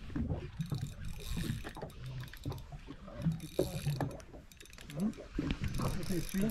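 Spinning fishing reel being worked against a hooked fish, its drag and gears clicking in short spells: about a second in, again around the middle, and near the end.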